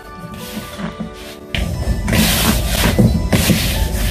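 Background music. From about a second and a half in, loud rustling and scraping with soft knocks from hands kneading and gathering crumbly cheese-and-butter dough in a plastic bowl.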